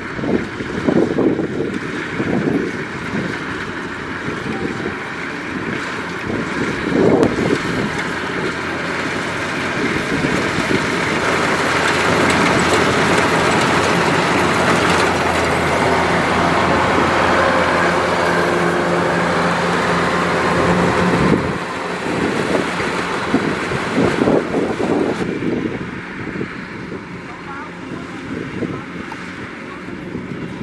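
Kubota DC-105X combine harvester running while it cuts and threshes rice: a steady diesel engine and machinery drone. It grows louder and steadier in the middle, then drops off suddenly about two-thirds of the way through.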